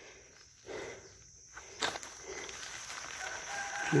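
Quiet rustling of dry leaf litter being stirred, with one sharp click about two seconds in and a faint high steady tone near the end.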